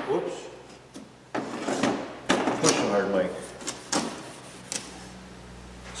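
A large wood-framed whiteboard being tilted and shifted by hand: a string of scrapes and knocks from its frame, from about a second and a half in until near the end.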